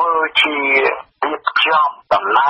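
Speech only: a voice reading radio news in Khmer, with a brief pause about a second in.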